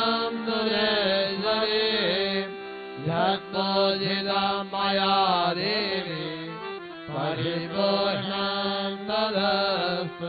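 Devotional aarti chanting: a voice sings a mantra-like hymn with wavering, ornamented pitch over steady held drone notes from a harmonium.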